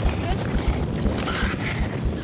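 Wind rumbling and buffeting on the microphone aboard an Atlantic-class inshore lifeboat in choppy sea, with boat and water noise underneath.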